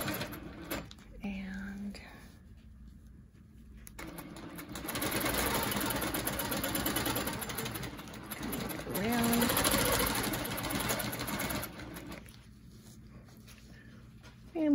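Longarm quilting machine stitching as a ruler template is guided around the foot, running in two spells: briefly at the start, then again from about four seconds in until near the end, stopping in between.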